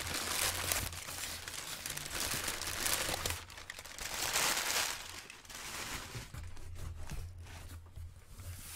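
Crumpled brown kraft packing paper crinkling and rustling as it is pulled in handfuls out of a cardboard shipping box. Loudest in the first three seconds and again about four seconds in, then softer.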